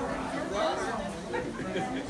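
Indistinct chatter: several people talking at once, no words clear.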